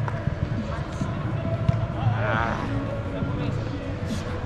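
Voices calling out across a large, echoing indoor soccer hall over a steady low hum. A single sharp thud of a football being kicked comes a little under two seconds in.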